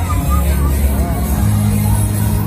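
Busy fairground crowd ambience: scattered voices of passers-by over a loud, deep low hum whose pitch shifts about a second and a half in.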